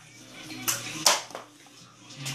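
A handheld phone being handled and moved: a short rustle or knock a little after half a second and a louder one about a second in, with faint talk in the background.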